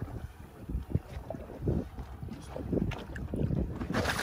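Wind gusting on the microphone, coming in irregular low surges, with sea water slapping against the side of an inflatable boat.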